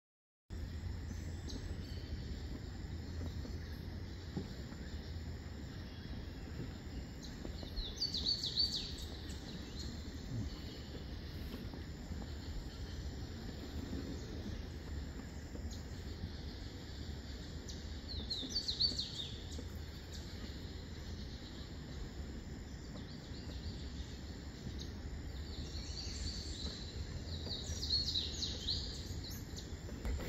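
Mangrove jungle ambience: birds calling in three bouts of high chirps, about ten seconds apart, over a steady low rumble.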